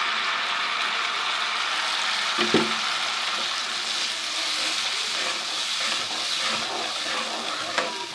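Onion and ginger-garlic paste with a freshly added paste frying in hot ghee in a pan, a steady sizzle, with a single knock about two and a half seconds in.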